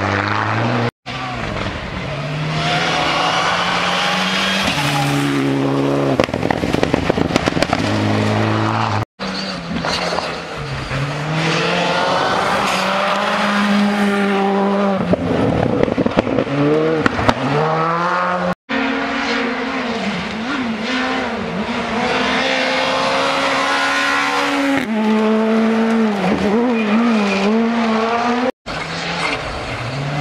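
Rally cars driving flat out on a gravel stage, one after another: each engine revs high, drops and climbs again through gear changes and lifts for corners. The sound breaks off abruptly several times as one car's pass gives way to the next.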